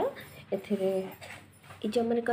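A person's voice: a short drawn-out vocal sound about half a second in, a brief lull, then another held vocal sound starting near the end.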